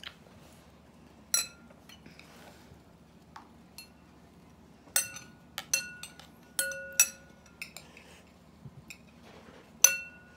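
A metal spoon held in the mouth clinking against bowls in scattered, irregular strikes, several ringing briefly. The strikes come thickest about five to seven seconds in.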